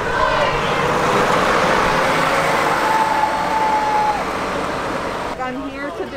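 Motor coach driving past close by: a steady rush of engine and tyre noise that stops abruptly about five seconds in.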